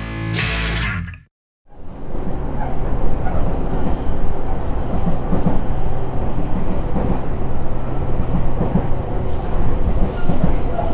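An electric guitar rock band's last chord rings out and is cut off about a second in. After a short silence, a commuter train's interior running noise follows: a steady rumble with a low hum and irregular rattling as the carriage moves.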